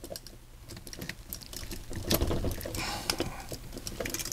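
Small clicks and rattles of the Voltron figure's toy parts as the red lion is pushed onto the torso's joint peg, a string of light clicks that is busiest in the middle.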